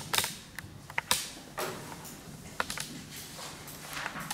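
A few irregularly spaced sharp clicks and knocks, the loudest about a second in, over a steady low hum.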